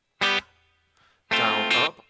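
Clean electric guitar strumming a three-string triad chord twice. The first strum is short and clipped. About a second later a longer one rings for about half a second and is cut off sharply.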